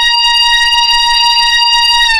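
A loud siren-style sound effect holding one steady pitch with a slight downward drift, then starting to slide down in pitch right at the end.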